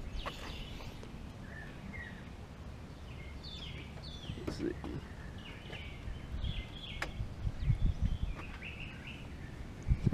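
Quiet outdoor background with faint bird chirps, a single sharp click about seven seconds in, and soft footsteps on wet concrete near the end.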